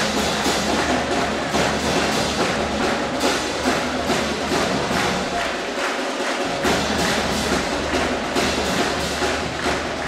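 Pep band drums playing a steady rhythmic beat of drum hits and sharp clicks.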